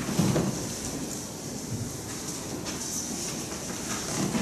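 Shuffling footsteps, rustling and soft low bumps of people moving about the pews, with no music or speech.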